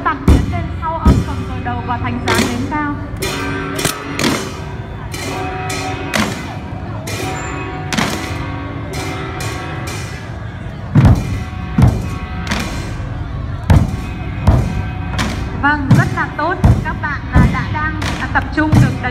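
A drum troupe beating a large barrel drum and smaller drums over music with singing. The loud deep strikes are sparse at first and come about once a second in the second half.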